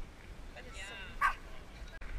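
A dog vocalising: a short high-pitched call just under a second in, then a single sharp yelp a little over a second in, the loudest sound.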